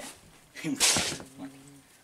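A man coughs once, loudly and harshly, about a second in, then follows it with a short low voiced sound on one pitch.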